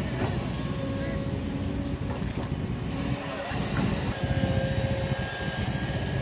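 Small engine running steadily at an even pitch: the engine of a water pump pumping water out of the pond.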